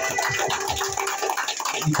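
A room of people clapping and applauding, a dense patter of hand claps, as the song ends.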